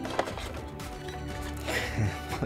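Background music with steady tones. A single sharp click of the plastic toy packaging being handled comes near the start, with light handling rustle near the end.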